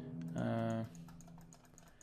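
A brief hummed "mm" from a man about half a second in, then faint, irregular clicking of computer keys.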